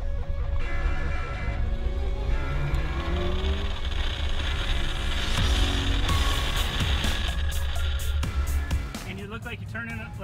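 Mitsubishi Lancer Evolution's turbocharged four-cylinder engine pulling hard on a speed-stop run, its pitch rising in the first few seconds, mixed under background music. The engine sound falls away near the end as a voice comes in.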